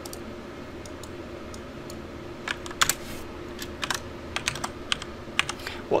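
Typing on a computer keyboard: scattered keystrokes start about two and a half seconds in, over a faint steady hum.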